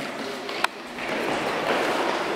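Steady background noise of a large indoor sports hall, with one sharp click a little over half a second in.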